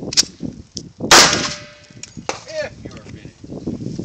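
Handgun shots: a few sharp cracks, the loudest about a second in, followed by a metallic ringing.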